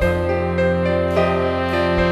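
Live progressive rock band playing: a held low bass note under sustained pitched chords, with the drummer's cymbals struck about every half second. The bass note changes near the end.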